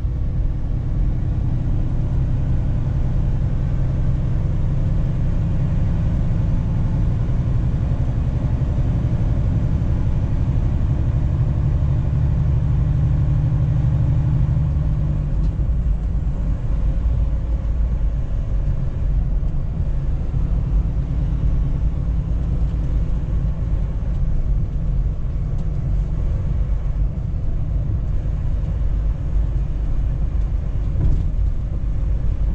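Steady low drone of a heavy truck's diesel engine and tyre noise, heard from inside the cab while driving on a snowy highway. The deepest part of the drone eases slightly about halfway through.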